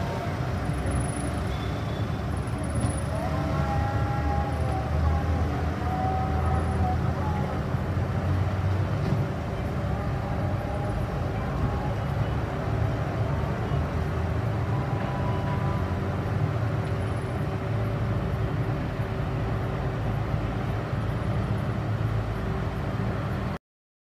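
Car engine running at low speed, a steady low rumble, with voices faintly in the background.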